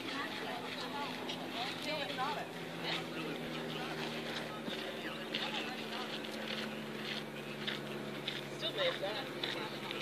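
Faint, scattered background chatter from people's voices over a steady low hum.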